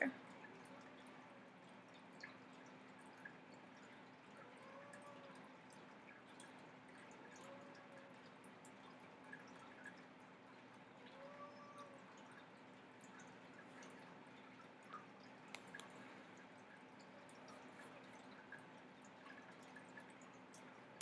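Near silence: room tone with a faint steady hum and a few faint, scattered ticks.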